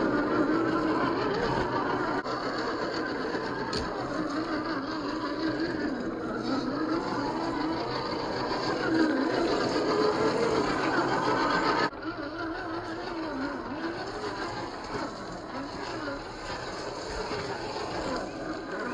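1/10-scale SCX10 II RC crawler's 540 45-turn brushed motor and geared drivetrain whining, the pitch rising and falling with the throttle as it crawls up loose dirt and rocks. The sound drops abruptly in level about twelve seconds in.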